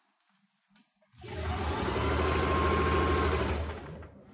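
Singer domestic sewing machine stitching through layers of coat fabric. It starts about a second in, runs at a steady speed with a rapid needle rhythm for about two and a half seconds, then slows and stops near the end.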